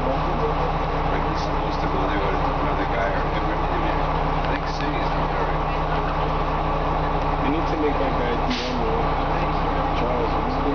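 Cummins M11 diesel engine of an Orion V transit bus running steadily, heard from inside the passenger cabin, with passengers talking over it.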